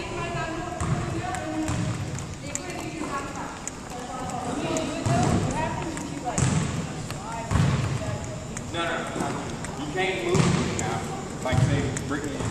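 Background chatter of students in a gym, with a basketball bouncing on the hardwood floor several times at uneven intervals.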